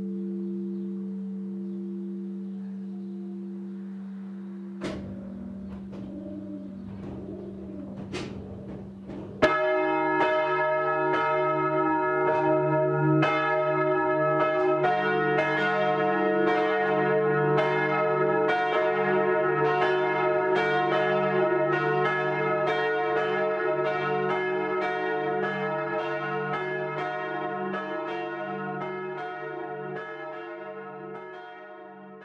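Church bells ringing, several bells struck in quick succession, starting sharply about nine seconds in and fading toward the end. Before them a held musical chord dies away and a few knocks sound.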